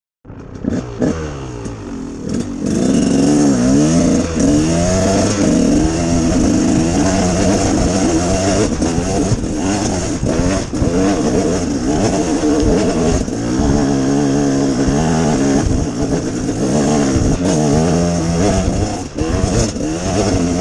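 Dirt bike engine under load on a steep hill climb, revving up and down over and over as the throttle is worked, with occasional knocks and clatter from the bike over the rough trail.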